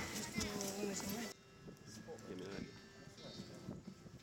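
A person's voice held on one drawn-out note for about the first second, then faint background voices.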